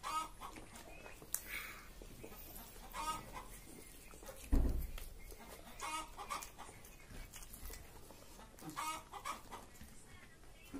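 Chickens clucking in short calls every few seconds, with a single low thump about halfway through that is the loudest sound.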